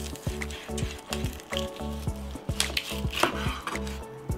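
A knife sawing through the crisp roasted skin and meat of a pork knuckle, a dry crackling crunch, over background music with a steady beat.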